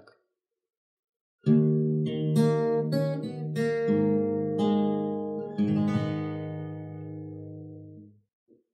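Acoustic guitar played fingerstyle, a short closing phrase that ends the piece: a chord about a second and a half in, a few plucked notes, then a final chord about two seconds before the end left ringing and fading out.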